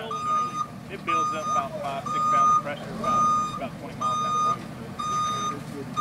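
Reversing alarm on a Terradyne Gurkha armored vehicle, beeping six times in a steady one-tone pattern, about half a second on and half a second off, as the truck backs up. A low engine rumble runs underneath.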